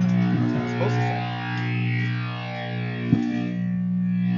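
Distorted electric guitar through an amplifier, holding a steady sustained drone rather than playing a tune, loud enough to draw a complaint that it needs turning down. A single knock about three seconds in.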